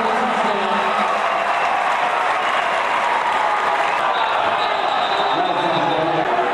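Crowd noise in an indoor arena: a steady, loud din of many voices talking and calling out at once, with no pauses.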